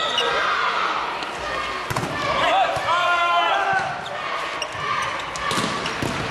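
Volleyball rally in a sports hall: the ball is struck sharply about two seconds in and again near the end, with players' shouts and calls in between.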